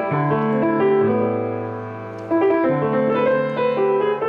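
Piano played in chords: the notes are held and ringing while new notes come in above and below them. The sound fades slowly through the middle and picks up with a fresh chord a little past two seconds in.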